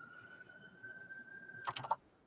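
A few quick computer keyboard clicks near the end, over a faint steady high tone.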